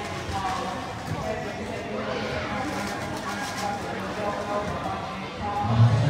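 Several people's voices talking at once, the words indistinct, with faint music underneath; a loud, low voice comes in near the end.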